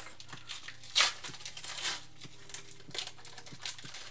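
Foil trading-card booster pack wrapper crinkling as it is handled in the hands, with one sharp crackle about a second in and a few faint clicks.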